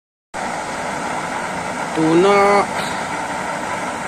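Homemade waste-engine-oil burner running with a steady rushing noise of its flame and air feed. A voice speaks briefly about halfway through.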